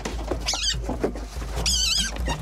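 An otter's high-pitched, wavering squeaks: a short burst about half a second in and a longer one near the end, over background music.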